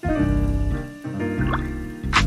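Background music with a melody of held notes changing every half second or so, and a brief rising glide about one and a half seconds in.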